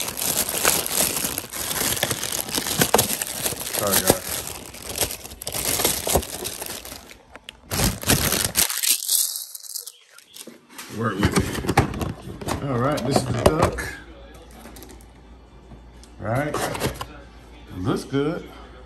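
Thin plastic bag crinkling and rustling as hands unwrap takeout food containers, dense and crackly for about eight seconds before it stops suddenly. After a short gap, a voice is heard in two brief stretches.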